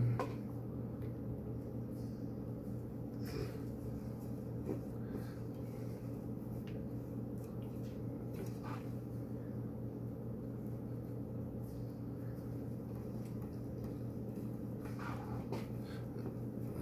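Faint rustling of wool yarn being twisted and drawn on a wooden hand spindle, with a few soft brief scrapes, over a steady low room hum.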